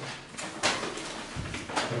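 Room noise with two short, sharp knocks about a second apart and a faint low thump between them.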